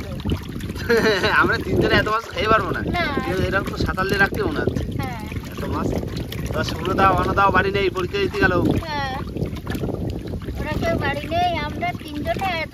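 Water sloshing and splashing in an aluminium basin as hands rub and turn cut fish pieces to wash them, under voices talking through most of it.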